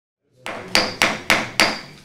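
Gavel rapped five times in quick succession, about three raps a second. The first is lighter and each rap is sharp with a brief ring. It is the signal calling a meeting to order.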